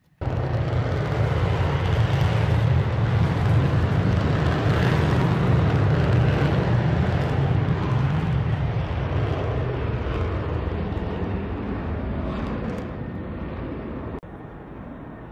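Loud jet engine noise from an F-16 on the flight line: a deep, steady rumble with a hiss above it. It cuts in suddenly, is strongest in the first half and eases off slowly before cutting off at the end.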